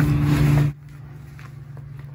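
A steady low hum and hiss that drops off abruptly under a second in, leaving faint room tone with a couple of soft clicks.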